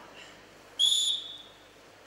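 A referee's whistle blown once, a short, shrill blast of about half a second, stopping the wrestling bout.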